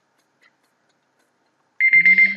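Near silence, then near the end a timer alarm suddenly starts sounding a loud, steady high tone, signalling that a 30-second countdown is up.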